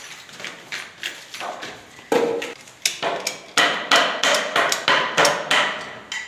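Hammer blows: a few scattered knocks, then from about two seconds in a quick run of strikes, several a second, each with a short ringing note.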